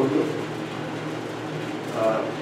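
Steady hum of a window air conditioner running in a small room, with a brief bit of a man's voice at the very start.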